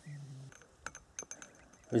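A man's drawn-out hummed 'mmm' for about half a second, then a few faint, sharp little clicks from fishing hook and line being handled close to the microphone.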